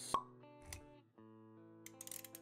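Logo-animation intro music with sustained plucked notes, punctuated by a sharp pop just after the start and a softer low thump about half a second later.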